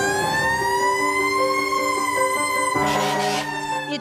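Fire truck siren rising in pitch, holding high, then slowly falling, with a short hiss about three seconds in.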